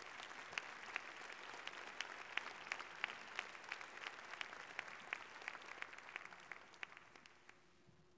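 Audience applause: many hands clapping, with single sharp claps standing out, fading away near the end.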